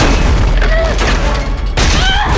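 Film sound effects of a great white shark lunging against a metal buoy: heavy water crashing and deep booming impacts, with a sudden loud hit at the start and another near the end, under a low rumbling score.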